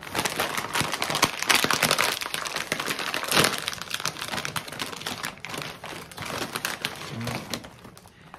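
Plastic snack bag crinkling and crackling as it is handled, pulled open at the top and a hand reaches in for a pretzel. The crackle is loudest in the first half and thins out toward the end.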